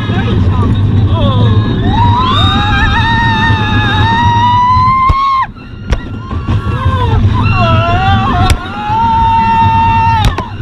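Roller coaster riders screaming in two long held cries, the first rising slowly then cutting off about halfway through, the second starting near the end, over the steady low rumble of the steel coaster car running on its track. A few sharp knocks from the car sound in between.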